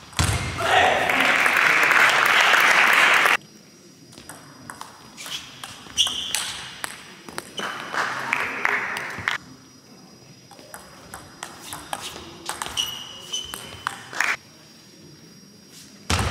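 Table tennis ball clicking off the table and rackets, some contacts ringing with a short high ping in a large hall, busiest near the end during a rally. A loud burst of noise fills the first three seconds and cuts off suddenly.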